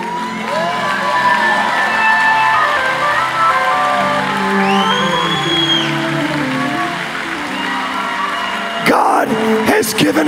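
Live church worship music, a band holding slow sustained chords, with whoops and cheers from the congregation; a voice starts speaking near the end.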